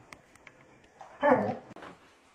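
German Shepherd giving one short, loud bark a little past a second in, followed by a fainter sound from it just after.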